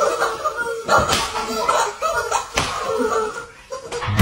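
Two sharp smacks of blows landing, about a second and a half apart, amid men's shouting and laughter.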